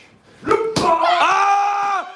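Two sharp smacks of strikes landing, about a quarter second apart, half a second in, followed by a long held yell.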